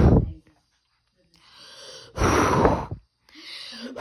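A person blowing hard on a hot spicy chicken sandwich to cool it: forceful blows of breath, each after a quieter in-breath, the blasts hitting the microphone with a low rumble.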